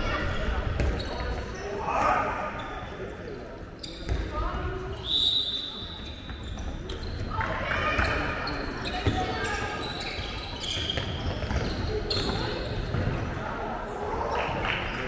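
A handball bouncing on the hall's wooden floor as players dribble and run, with short high squeaks and voices calling out, all echoing in the large sports hall.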